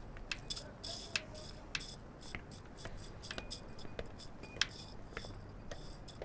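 Light, irregular clicks and clinks of dishes, glass and utensils being handled at a kitchen counter and table.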